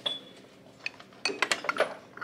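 Glass pieces knocking and clinking as they are set down among other wares in a plastic shopping cart: one sharp knock with a brief ring at the start, then a flurry of small clinks in the second half.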